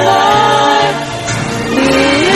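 A song with voices singing long held notes over a backing track with a stepping bass line.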